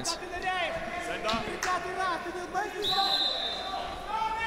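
Referee's whistle blown in one steady, high blast of about a second near the end, restarting the bout after a stalemate. Before it, voices call out in the arena over a few short thuds.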